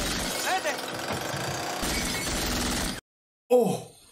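Film soundtrack of a violent scene: a chainsaw running under shouting, with glass shattering as shots go through a mirror. The whole mix cuts off abruptly about three seconds in.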